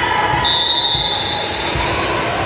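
A volleyball is bounced a few times on the gym's hardwood floor by the server before her serve. A short, high whistle sounds once about half a second in, over crowd voices.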